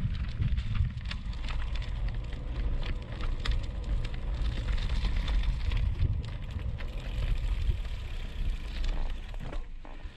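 Wind rumbling on a bike-mounted action camera's microphone, with the crackle of gravel-bike tyres rolling over a wet, rough, potholed lane. It eases off near the end as the bike slows almost to a stop.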